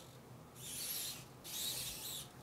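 Two soft rustling hisses, each under a second long, one about half a second in and one near the end.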